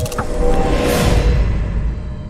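Logo-reveal sound design of a channel intro: a sharp hit, then a deep booming rumble with a whoosh sweeping through, beginning to fade near the end.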